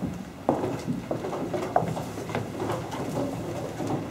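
Footsteps and shuffling of a group of people walking across the wooden deck planks of a ship's gun deck: irregular knocks and scuffs over a low murmur.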